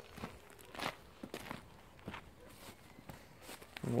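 Faint footsteps on dirt and gravel ground: a few irregular steps.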